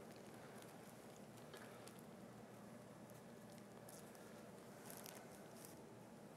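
Near silence: faint room tone with a few soft scattered clicks and rustles, mostly in the second half.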